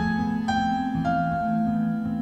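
Slow, soft piano music: a few melody notes struck about half a second apart, the last one held and fading, over sustained low notes.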